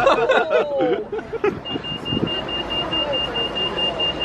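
Voices in the first second, then a steady, high-pitched electronic beep that starts about one and a half seconds in and keeps going over street noise.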